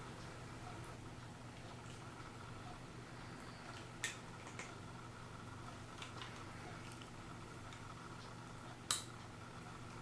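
A few faint, sparse metallic clicks from an anniversary clock movement as its mainspring is let down slowly with a let-down key, the catch letting it go a little at a time; the loudest click comes near the end. A steady low hum lies under it.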